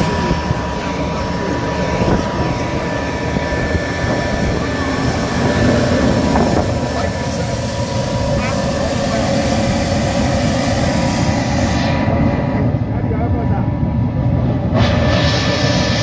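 Private jet's turbine running at idle on the apron: a steady loud rush with a thin high whine held on one pitch.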